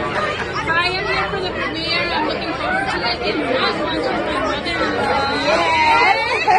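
Women's voices laughing and then chatting over one another, with no clear words.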